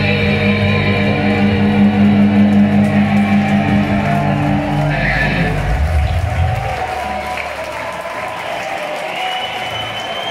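A live heavy metal band's closing chord of electric guitars rings out and stops about six seconds in, then the crowd cheers and applauds.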